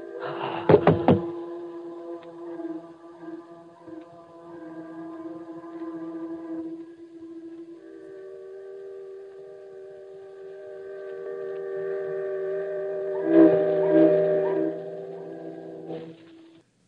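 Radio-drama sound effects: a couple of heavy thuds about a second in as the gassed reporter drops, then several steamship whistles holding long, overlapping tones. Halfway through the tones change, and they grow louder near the end.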